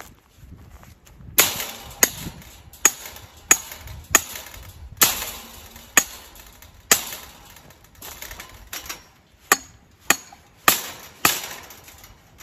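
Sharp hammer blows, about a dozen at an uneven pace starting a little over a second in, roughly one every half second to one second.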